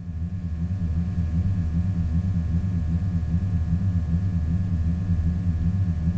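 Tesla Powerwall 2 home batteries running, their liquid-cooling pump and fan giving a steady low throbbing hum with faint higher steady tones over it. It sounds "kinda like a Starfleet warp core".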